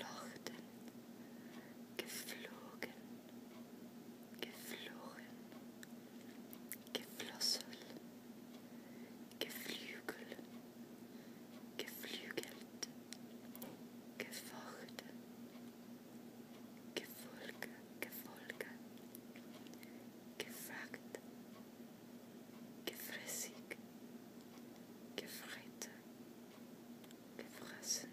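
A person whispering softly, short words or phrases every two to three seconds, over a low steady hum.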